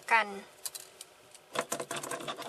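A woman's last spoken word, then light clicks and, from about one and a half seconds in, a quick patter of ticks and rustling as a hand holding a gel pen moves across a sheet of paper.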